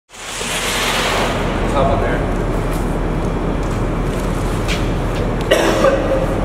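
A man coughing and retching over a trash can, the loudest heave about five and a half seconds in. A steady rushing background noise runs underneath.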